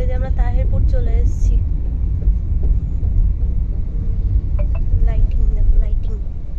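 Low, steady rumble of a car moving along a road, heard from inside. Voices come in briefly in the first second and again near the end.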